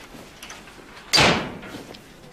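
A glass-panelled wooden door shutting once about a second in, a sharp knock that dies away over about half a second.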